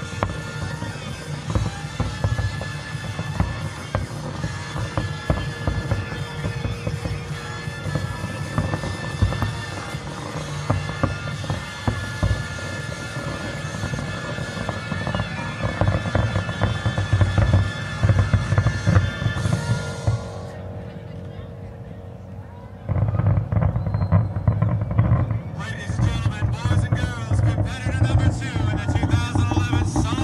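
A fireworks display over music played on loudspeakers, with the shells bursting through the music. About two-thirds of the way in the music stops, and after a short lull a loud low rumble and voices take over.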